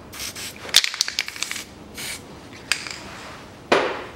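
Short hisses of aerosol lubricant sprayed onto rusty bolts, with a few small clicks in between and a louder burst of spray near the end.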